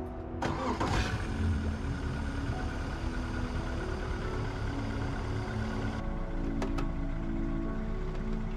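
Yamaha 115 four-stroke outboard motor starting about half a second in and settling into a steady idle, under background music.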